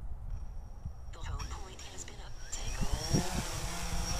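DJI Phantom 3 Standard quadcopter's motors starting up for automatic takeoff: a rising whine about two and a half seconds in, settling into the steady buzz of the spinning propellers. Wind rumbles on the microphone.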